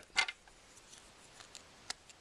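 Light plastic clicks from handling a toy figure's grey plastic gun accessory as its barrel is flipped out, with one sharp click near the end.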